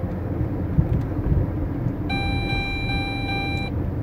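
Steady low rumble of a car driving, heard from inside the cabin. About two seconds in, a phone starts ringing with a steady electronic tone lasting about a second and a half.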